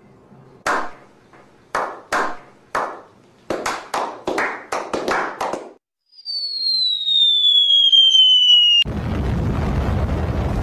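Sharp hits in a quickening run. A falling bomb-drop whistle sound effect follows about six seconds in and is cut off by a sudden loud explosion near the end.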